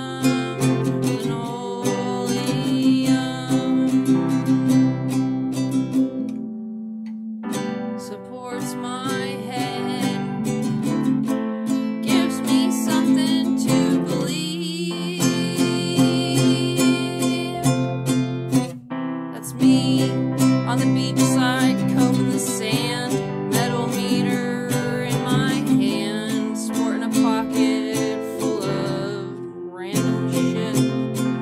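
Strummed acoustic guitar with a woman singing over it, a solo home cover of a punk song. The music dips briefly twice.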